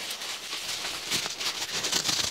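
Clear plastic bag crinkling and rustling in the hands as a part is unwrapped, with a few light clicks and crackles.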